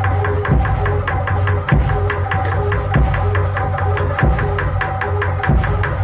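Jaranan gamelan accompaniment: a fast, steady drum beat with a short repeating melodic figure over a sustained low tone.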